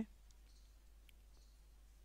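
Near silence with a few faint computer mouse clicks, over a faint low hum.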